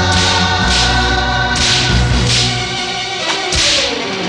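Devotional film-song music: a choir holding long notes over orchestral backing, with several sharp hissing strikes cutting through.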